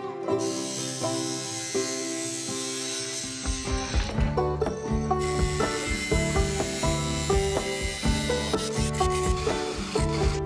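Angle grinder cutting through a bicycle frame tube, a steady hissing grind that dips briefly around the middle, over background music with plucked strings and a beat that comes in partway through.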